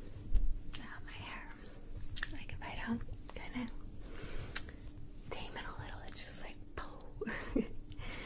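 Soft whispering, with swishes of long hair being flipped and a short low thump about half a second in.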